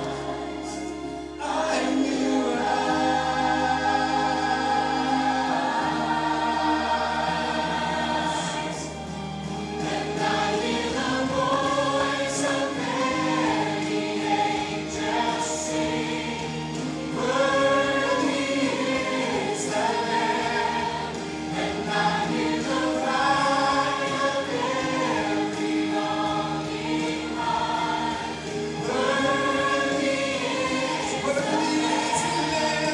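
Church choir singing a gospel song, with a male lead singer on a microphone in front and a steady bass accompaniment beneath the voices.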